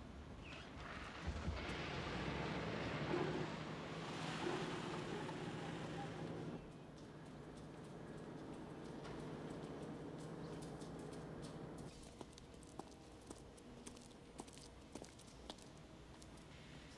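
Soft outdoor ambience: a noisy wash with a low steady hum, fuller for the first six seconds and quieter after. In the last few seconds come faint footsteps of several people walking on concrete.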